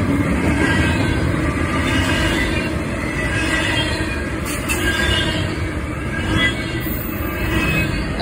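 Double-stack intermodal freight cars rolling past at speed: a steady rumble of steel wheels on rail, with faint high wheel squeals coming and going.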